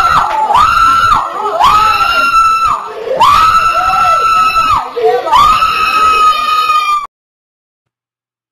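A woman screaming in a very high, held voice into a handheld microphone, amplified: a run of about five long cries, the longest a second and a half, that the host later apologises for to anyone wearing earbuds. The sound cuts off abruptly about seven seconds in.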